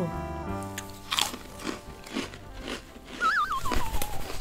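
Crunchy freeze-dried chocolate marshmallow snack being chewed, about two crunches a second, over background music. Near the end a wavering high tone glides downward.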